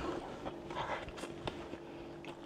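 A person chewing a mouthful of burger with the mouth closed: faint wet mouth clicks and soft chewing sounds over a faint steady hum.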